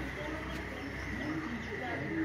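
Street ambience of birds calling, with short low calls from about a second in and faint higher chirps, over a steady high-pitched tone and a low hum.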